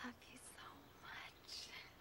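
Very faint whispered speech: a few soft, breathy words.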